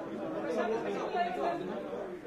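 Indistinct voices talking, more than one person speaking at once.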